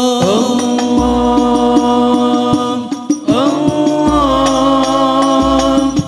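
Group of male voices chanting a sholawat in unison, in long held notes that each slide up at the start, over Banjari frame drums (terbang) struck in a steady pattern.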